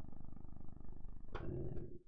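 A man's low, creaky throat hum (a drawn-out vocal-fry 'eum' made while thinking), with a short breathy sound about one and a half seconds in, cutting off just before the end.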